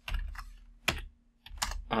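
Typing on a computer keyboard: a handful of separate, sharp keystrokes.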